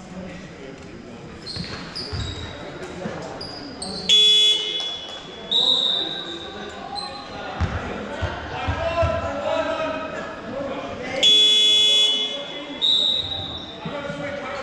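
Basketball hall scoreboard buzzer sounding twice, each a loud, flat electronic blast under a second long, about four and eleven seconds in. Between them are ball bounces, a short high tone after each blast, and players' voices echoing in the large hall.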